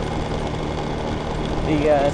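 A motor scooter's small engine running steadily while riding, with road and wind noise, heard from the rider's seat.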